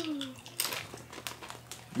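Doritos tortilla chips being bitten and crunched: faint, irregular crisp crackles starting about half a second in.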